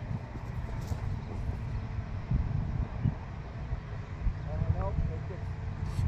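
Wind buffeting the microphone, a gusty low rumble, with a brief mutter of speech a little before the end.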